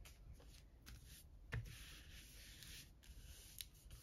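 Faint rustle of hands rubbing and pressing a freshly glued piece of paper flat, with one soft tap about one and a half seconds in.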